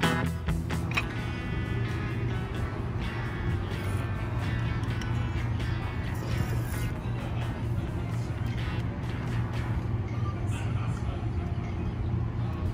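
Background music with guitar fading out in the first second, followed by steady outdoor ambience: a continuous low rumble with faint traces of music over it.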